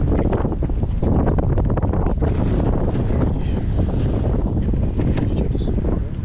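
Wind buffeting the microphone outdoors: a loud, steady, low rumble with no distinct events.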